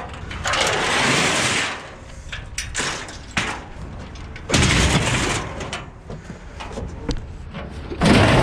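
Metal medical-bed frame being shifted by hand among junk in a dumpster, scraping and clanking: two long grating scrapes, one early and one about halfway through, with scattered knocks between.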